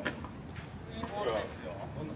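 Crickets giving a steady high-pitched trill, with a faint voice about a second in.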